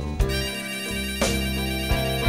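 Blues band playing an instrumental passage: a lead instrument holds one long sustained note over electric bass, with drum hits about a second apart.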